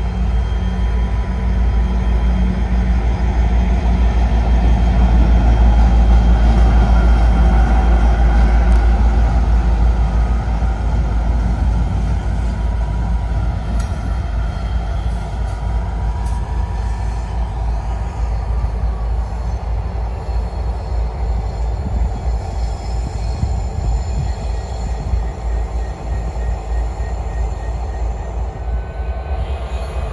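Diesel-hauled grain train running past: a deep engine rumble with wagons rolling on the rails, swelling to its loudest about six seconds in, then easing to a steady rumble.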